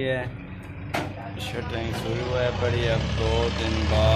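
A man talking over a low engine drone that grows louder in the second half, with one sharp knock about a second in.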